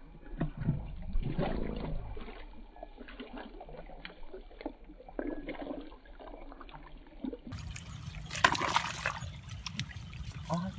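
Hands sloshing and splashing in shallow, muddy paddy water, with irregular small splashes and trickling. There is a louder burst of splashing late on.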